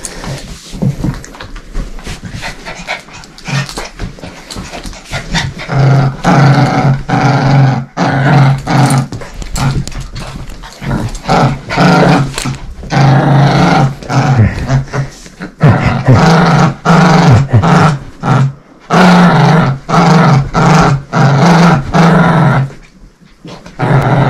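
Small dog growling in repeated bursts while tugging on a leash held in its mouth, in play.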